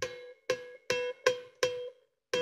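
Electric bass guitar harmonics: the same high, chime-like note plucked five times in quick succession, each ringing briefly and fading.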